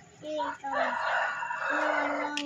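A rooster crowing in the background: a few short broken notes, then a long drawn-out final note that carries on past the end.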